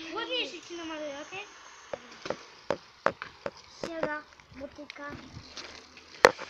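Faint voices talking in the background, with scattered short, sharp clicks and knocks throughout.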